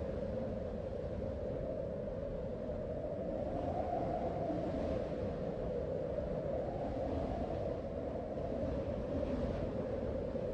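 Steady low rumbling background noise with a faint hum, unchanging throughout; no voice or music.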